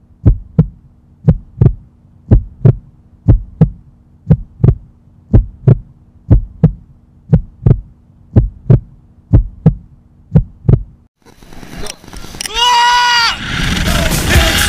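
Heartbeat sound effect, a double thump about once a second over a low steady hum, cutting off about eleven seconds in. Then a rush of wind noise and a man's short yell as the drop begins.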